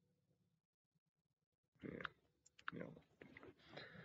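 Near silence: room tone. From about two seconds in, a man mutters quietly ("yeah", "no"), with a few short clicks and soft mouth noises.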